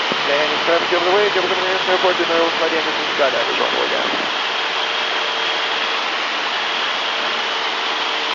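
Piper Super Cub's engine and propeller running steadily in level cruise, heard as a steady drone with a hum, mixed with rushing wind through the open cockpit windows. A faint voice comes through in the first few seconds.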